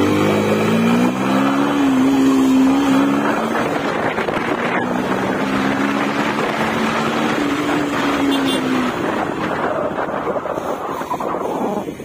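Yamaha motorcycle engine running under way at low town speed, its note rising and falling with the throttle over wind and road noise. The engine note fades about three-quarters of the way through, leaving the wind and road noise.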